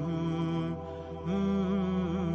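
Background music: a singer holding long, wavering notes of an Arabic nasheed over a steady low drone, breaking off briefly about a second in.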